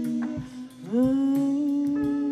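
Live band music with drum kit and guitar, built on long sustained notes. About a second in, a note slides up in pitch and is held, and the music grows louder.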